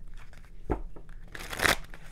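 A tarot deck being shuffled by hand: a light tap about two-thirds of a second in, then a short rustle of cards sliding against each other about a second and a half in, the loudest sound.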